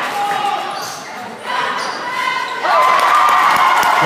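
Basketball bouncing on a hardwood gym court during play, with voices of players and spectators in the hall around it; it gets louder in the second half.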